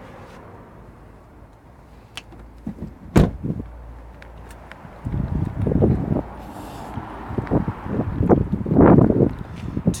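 A car door on a Porsche Cayenne being shut: one sharp slam about three seconds in. After it come irregular low rumbles of walking and handling noise on the microphone.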